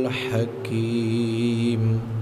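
A man chanting an Arabic invocation in slow melodic tones. He holds a note, breaks briefly about halfway, then holds one long note that fades near the end.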